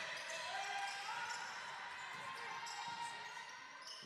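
Faint court sound from an indoor basketball game: a steady murmur in the hall with a basketball bouncing on the hardwood floor.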